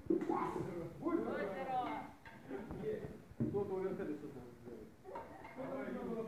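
Indistinct speech: people talking, with nothing else standing out.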